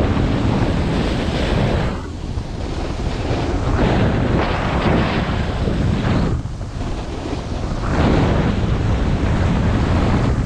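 Wind buffeting the microphone of a skier's body-worn camera during a fast descent, mixed with the hiss of skis on snow. The rushing noise swells and eases every second or two through the turns, dropping off briefly twice.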